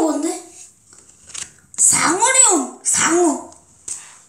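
A child's voice making drawn-out exclamations or sounds whose pitch arches up and down, three times, with a short click between them.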